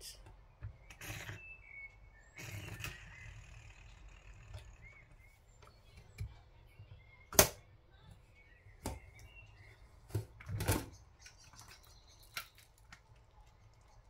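Stainless steel pressure cooker being unlocked and opened once its pressure indicator has dropped and the pressure is gone: scattered sharp clicks and knocks of the handle's opening slide and the metal lid against the pot. The sharpest click comes about halfway through.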